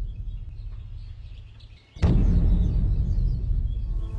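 A deep low boom fading away, then a second sudden, loud low boom about two seconds in that rumbles on.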